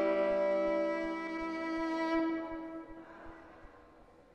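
Solo violin playing the closing phrase of a slow, mournful song: long sustained bowed notes that stop about three seconds in, leaving only a fading tail.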